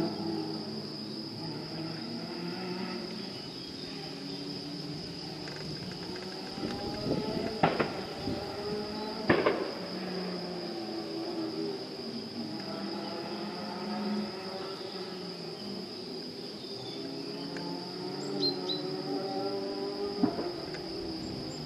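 Crickets chirping in a steady high-pitched drone, over a low, wavering background murmur. About halfway through come two sharp clicks, a second and a half apart.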